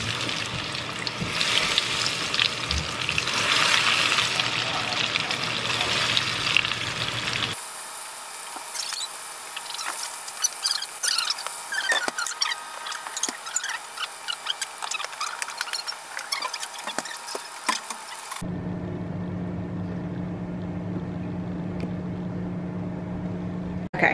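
Cauliflower pieces deep-frying in hot oil in a pot: a dense, steady sizzle, then after about seven seconds sparser crackling and popping. In the last few seconds a steady low hum sits under a fainter sizzle.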